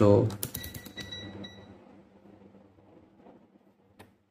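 Rotary selector dial of a UNI-T digital multimeter clicking through its detents, a quick run of clicks about half a second in, with a faint tone ringing out and fading over the next second.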